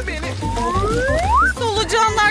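Background music with a low steady bass, over which a single smooth rising whistle-like glide sweeps up for about a second, starting about half a second in and cutting off sharply: a comedy sound effect.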